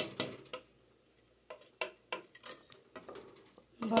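Wooden spoon stirring rice and chicken in broth in an aluminium pressure-cooker pot, knocking and scraping against the metal side in a string of irregular clacks, the first one the loudest.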